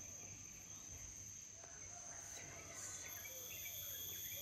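Tropical insects trilling steadily in a high, continuous tone, with a second, lower insect tone joining about three seconds in.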